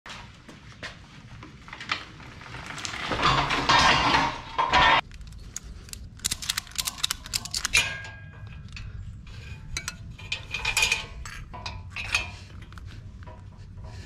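Metal clinks, clicks and rattles from a dirt bike being secured on a steel hitch-mounted carrier with tie-down straps. A louder burst of noise comes a few seconds in and lasts about two seconds, followed by a string of sharp clicks.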